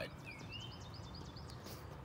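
Quiet outdoor ambience with a bird singing in the background: a short whistled glide followed by a quick run of high chirps.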